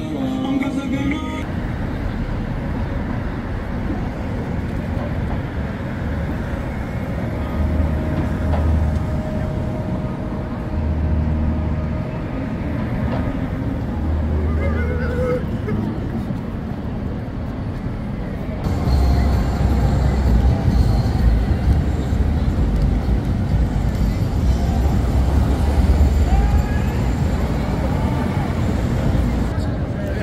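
Busy city street ambience: traffic noise with a steady low rumble and the voices of passers-by. Music ends about a second in. The sound changes abruptly about two-thirds of the way through and is a little louder after.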